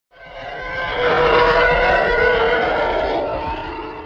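An intro sound effect: several sustained tones over a rushing noise, swelling up over the first second or so and then slowly dying away near the end.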